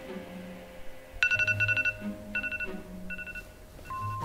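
Smartphone alarm going off: short bursts of rapid high-pitched beeping, starting about a second in and repeating four times, over faint background music.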